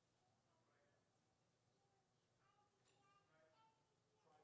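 Near silence: room tone, with very faint, distant voices in the second half.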